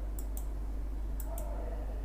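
Faint clicks in two pairs about a second apart, over a low steady hum: a computer mouse being clicked to bring the next illustrations onto the slide.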